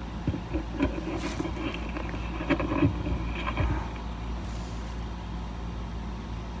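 Steady low rumble with faint scattered clicks and crackles in the first few seconds, picked up by a small microphone held in the ear: handling noise and sounds from the body and jaw.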